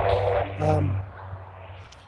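Distant semi-trucks on a road below: a low steady drone with a rushing noise over it, loudest at first and fading away near the end.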